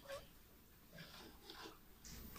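Near silence: room tone, with a few faint brief handling sounds of hands on a drawing sheet and a metal drawing board clip.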